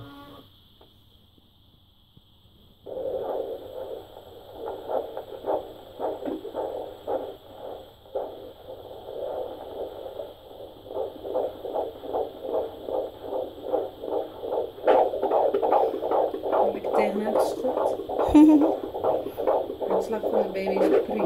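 Handheld fetal Doppler's loudspeaker giving out a heartbeat as rapid whooshing pulses, about two to three a second. It starts about three seconds in, once the probe picks up the heart, and grows louder in the second half. The rate fits the baby's heartbeat.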